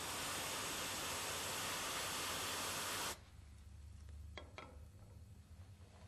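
Aerosol freeze spray hissing in one steady burst of about three seconds that cuts off sharply, chilling a K-Jetronic zero-degree switch below 0 °C to test it. Two faint clicks follow about a second later.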